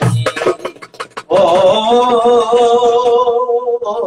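A man singing a Turkish folk song (türkü) to his own darbuka (goblet drum): a few drum strokes in the first second, then one long sung note with vibrato, held for about two seconds.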